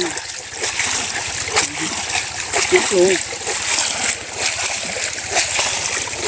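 Water splashing and sloshing with many small irregular splashes as a woven bamboo basket full of small fish is worked about in shallow muddy water.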